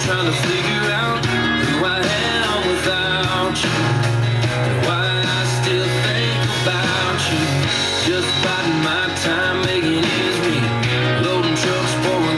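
A country song playing on FM radio: a singer over full band backing.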